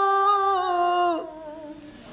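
A woman singing unaccompanied, holding one long steady note that dips slightly in pitch and stops about a second in, leaving quiet room tone.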